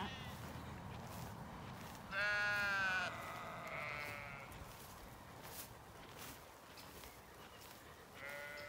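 A Zwartbles sheep bleats once, a quavering call of about a second, a couple of seconds in, followed by a fainter call.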